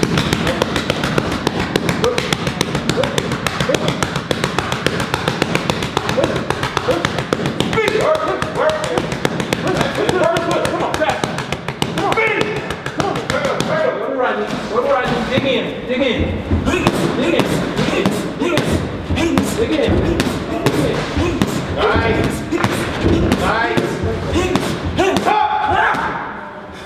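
Boxing gloves hitting focus mitts and pads in rapid flurries of punches, a quick run of sharp slaps and thuds, with a man's voice calling out at times.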